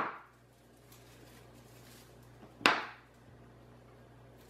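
Wire cutters snip through artificial flower stems with two sharp snaps, one at the very start and one a little under three seconds in.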